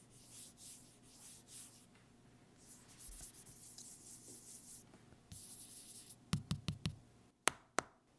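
Scraping and rubbing on the cardboard of a sealed phone box, in several hissy strokes, as the seal at its edge is worked free with a small tool. Near the end comes a quick run of five or six knocks, then two sharp clicks.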